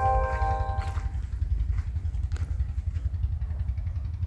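A small vehicle engine running steadily with a low, fast-pulsing rumble. A held musical chord fades out about a second in.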